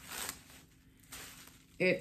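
Two brief rustles of a long straight human-hair wig being handled, its strands lifted through the fingers; the first rustle, at the start, is the louder.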